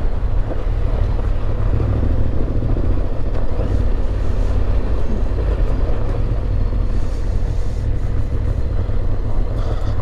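Yamaha Ténéré 700's parallel-twin engine running steadily at low speed on a dirt and gravel track, a constant low rumble with a hiss of road noise over it.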